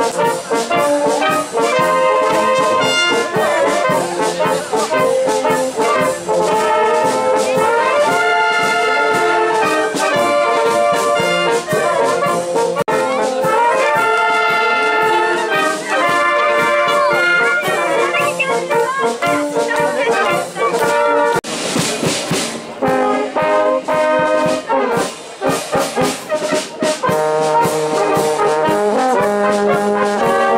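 An outdoor wind band of flutes, clarinets, flugelhorns, tenor horns and tubas playing, with held brass and woodwind notes throughout. A brief rush of noise cuts across the music about two-thirds of the way in.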